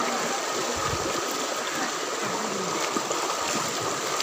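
Shallow rocky river running over and between stones: a steady, even rush of flowing water.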